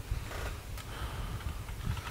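A low, steady hum with faint background noise in a pause between a man's sentences, picked up by a headset microphone.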